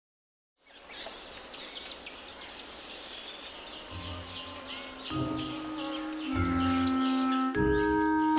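After half a second of silence, chirping birds over a light outdoor hiss fade in. About four seconds in, background music joins with held notes over a bass line, getting louder toward the end.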